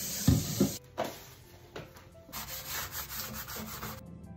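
A dish brush scrubbing the inside of a glass, a rasping rub in two stretches with a quieter pause between them.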